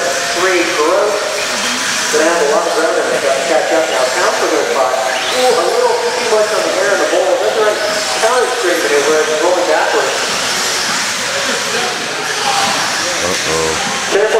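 Several electric RC buggies racing on an indoor dirt track, a steady hiss of motors and tyres, with an echoing race announcer's voice over a PA running on top.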